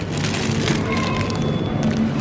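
Plastic bag of apples crinkling and crackling as it is picked up and handled, over the steady hum of the shop.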